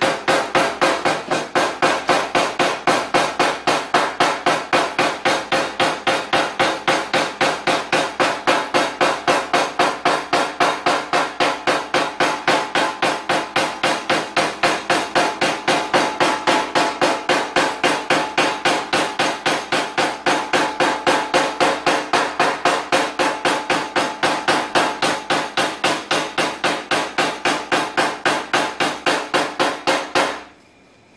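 Rubber-tipped paintless-dent-repair hammer tapping a car fender in a fast, even rhythm of about four strikes a second, knocking down the raised edge around a dent. Steady ringing tones run under the blows.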